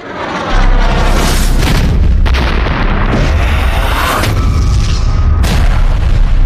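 Film sound effects of artillery shells exploding: a heavy, continuous low rumble with several sharp blasts.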